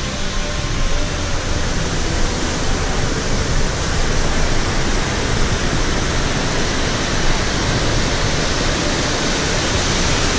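Waterfall cascading down a narrow rock chute: a loud, steady rush of water.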